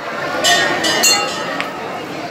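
A metal temple bell struck twice about half a second apart, each strike ringing with several clear high tones, over the chatter of a crowd.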